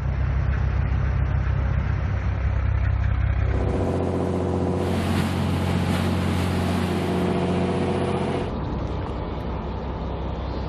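Motor engines running steadily. About three and a half seconds in, the drone changes to a different, higher set of steady tones, and a rushing hiss joins it from about five to eight and a half seconds in.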